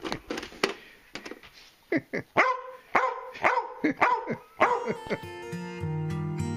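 Border collie barking in a run of short, sharp barks, asking for a snack, after a few sharp clicks in the first second. Acoustic guitar music starts near the end.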